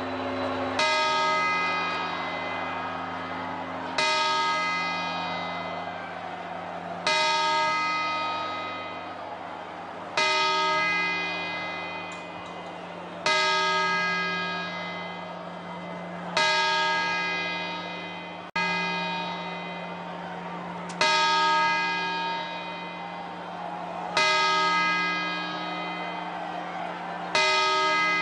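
The Puerta del Sol clock bell striking the twelve chimes of midnight that mark the New Year, one stroke about every three seconds, each ringing and fading before the next.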